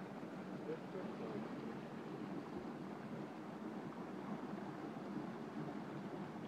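Steady rushing of a shallow river running over rocks and riffles, with a faint murmur of voices in the background.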